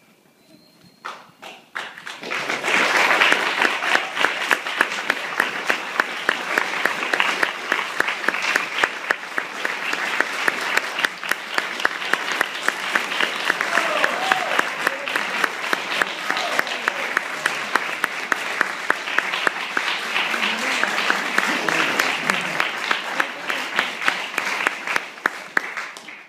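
Audience applauding at the end of a performance: a few scattered claps about a second in, then steady, dense applause that fades out right at the end.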